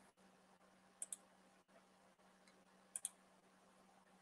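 Near silence with a faint low hum, broken by two faint double clicks: one about a second in, the other about three seconds in.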